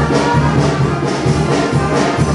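Loud brass band music with a steady, regular beat in the bass.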